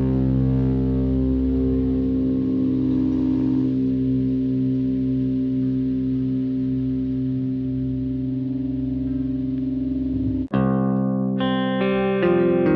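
Depressive black metal: a distorted electric guitar chord is held and left ringing with echo. About ten and a half seconds in it cuts off for a moment, and a cleaner guitar starts picking single notes.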